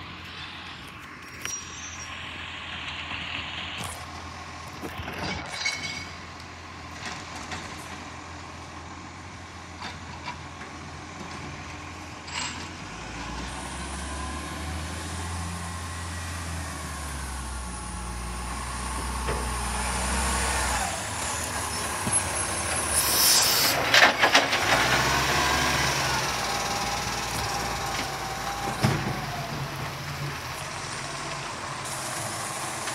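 Recycling garbage truck running with its diesel engine note. The engine strengthens and climbs for several seconds in the middle, and a loud burst of hiss and clatter comes about three-quarters of the way through.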